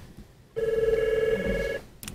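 A single ring of an electronic desk telephone: a trilling tone lasting a little over a second.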